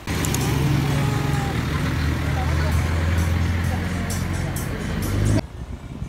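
A steady low rumble, as of a vehicle ride, under indistinct voices; it cuts off suddenly near the end.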